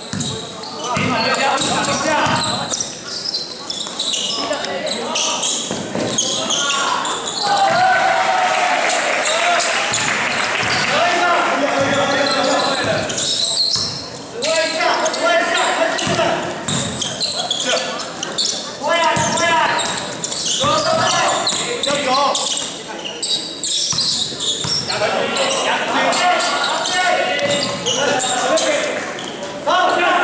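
Basketball bouncing on a hardwood gym floor during play, with voices calling out through much of it, echoing in a large hall.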